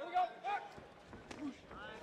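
Faint voices calling out in the arena, from the crowd or the corners, with a few light knocks.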